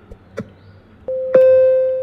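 An electronic timer beep signalling that time is up. A steady tone comes in about a second in, then jumps to a louder, buzzier tone with overtones that holds for most of a second.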